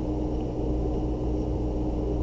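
Steady low electrical hum with faint hiss from the recording microphone, unchanging throughout: room tone with no other events.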